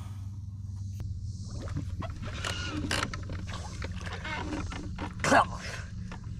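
Faint, indistinct voices over a steady low hum from the boat's motor, with a short louder burst near the end.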